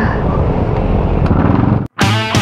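Steady low rumble of a Honda Click 125i scooter's single-cylinder engine and wind on the helmet-mounted microphone while riding slowly in traffic. The sound cuts off suddenly just before the end.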